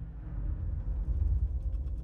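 Deep rumble starting suddenly and swelling about a second in, with faint rattling clicks over it: a film sound effect of the underwater research station shuddering as something strikes it from outside.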